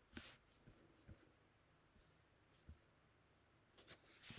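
Near silence with a few faint, short rustles and taps of paper, transparency sheet and tape being handled on a desk.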